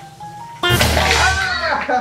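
Spring-loaded plastic toy fry box of a pull-the-fries game popping about half a second in, a sudden burst as it throws out its plastic fries, followed by loud laughing over music.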